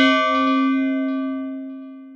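Notification-bell sound effect: a single struck bell ringing out with several steady tones, fading gradually.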